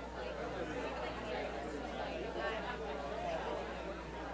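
A roomful of people talking at once in pairs and small groups: overlapping, indistinct conversation chatter.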